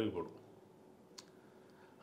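A man's speech trails off, then a near-silent pause in a small room with one brief faint click about a second in.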